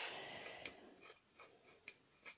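Faint rubbing of a cloth wiping excess bitumen off a painted wooden box, fading over the first second, then a few soft ticks.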